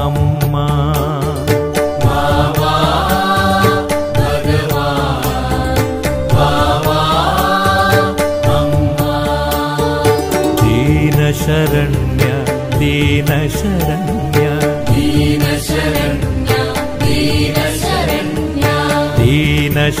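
Devotional Hindu song in a chant style: a singer's melody, with long gliding notes, over steady percussion and a low bass.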